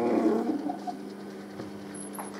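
A man's voice, one drawn-out sound trailing off in the first half second, then a low steady hum.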